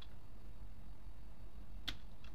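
A low steady hum with a lone computer keyboard keystroke at the very start and another just before the end, a pause in typing.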